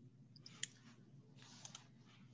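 Near silence: faint room tone from an open microphone, a low steady hum with a few faint clicks, the clearest a little over half a second in.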